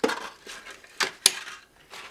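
Small hard-plastic toys being handled on a tabletop: a few sharp plastic clicks and taps, the loudest about a second in.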